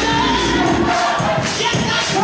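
Gospel choir singing an up-tempo song behind a lead singer on a microphone, with clapping and percussion keeping a steady beat.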